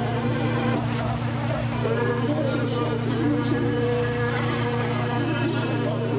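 Shortwave radio noise: a steady low buzzing hum under hiss and crackle, with faint whistling tones that come and go. The sound is thin and narrow, as heard through a shortwave receiver.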